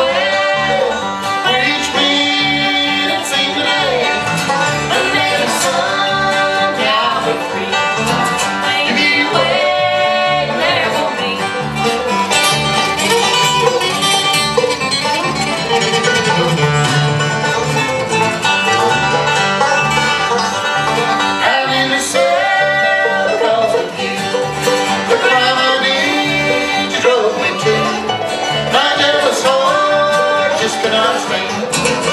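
Live bluegrass band playing: banjo and acoustic guitar picking over a bass line.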